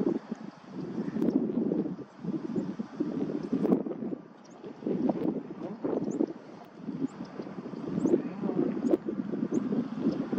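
Wind buffeting the microphone in uneven gusts that swell and drop every second or so.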